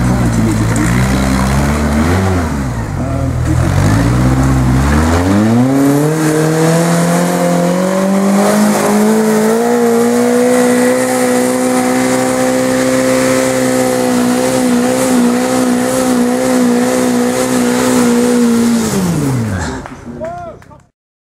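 Sporting trials car engine climbing a muddy wooded hill. Its revs waver low for the first few seconds, then rise sharply and are held high and steady for most of the climb, dropping away near the end.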